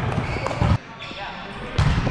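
Indoor volleyball rally: sharp hits of the ball about half a second in and again near the end, over a low rumble and the noise of players moving on a hard gym court.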